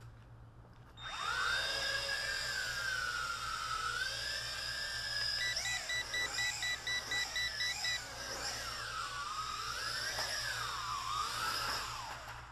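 Small quadcopter's motors whining, starting about a second in and rising and falling in pitch with the throttle. Midway, a rapid series of about nine short electronic beeps, roughly three to four a second.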